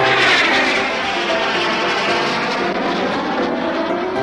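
Jet airliner sound effect: a loud rushing whoosh whose tone sweeps down during the first second and then holds steady, as of a plane coming in to land, over light background music.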